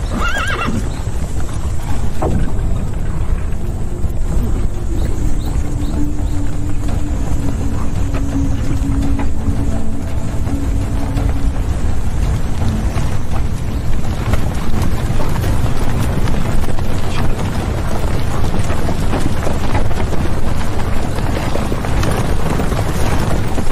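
A horse whinnies at the start. Then the hooves of a large troop of galloping cavalry horses make a dense rumble that grows louder and thicker from about halfway on.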